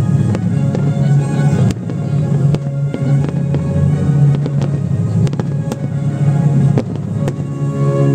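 Aerial firework shells bursting: a dozen or so sharp bangs scattered through, over loud music with sustained notes.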